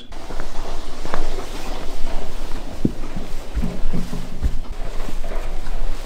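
A handheld camera being carried while its holder walks: rubbing and handling noise on the microphone, with a few footfall knocks in the middle.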